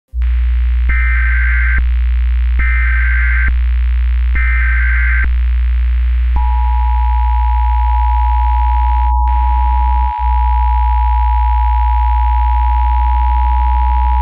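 Emergency Alert System required-weekly-test signal over a loud, steady low hum: three short bursts of data tones about a second each, then from about six seconds in the steady two-tone attention signal. The hum drops out for an instant about ten seconds in.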